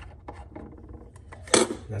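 Glass coffee carafe and its plastic lid being handled: a few faint clicks, then one sharper clink about one and a half seconds in.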